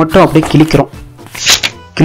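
Paper sheets rustling as a stack of pages is flipped through and tossed, with a sharp papery rustle about one and a half seconds in. A voice over music fills the first part.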